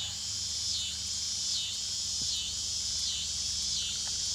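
A steady, high-pitched chorus of insects, pulsing in a regular swell a little more than once a second.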